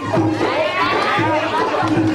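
Several voices talking over one another in excited chatter, one man's voice loud and animated.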